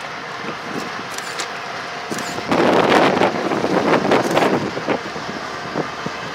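Diesel locomotives of a CN freight train running as they approach. The sound swells much louder about two and a half seconds in and stays up for a couple of seconds before easing off.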